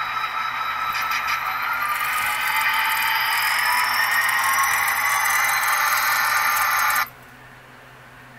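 Model train locomotive running along the track with a whine that rises slowly in pitch. The whine cuts off suddenly about seven seconds in, when the locomotive stalls on a curved turnout that gives it no power until the point rail makes contact.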